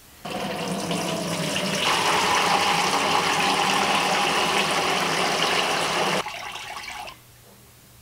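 Liquid poured from a pan through a cloth-lined metal colander into a plastic fermenting bucket, splashing steadily. The cooled kidney bean and raisin must is being decanted for fermenting. The pour gets louder about two seconds in and stops about six seconds in.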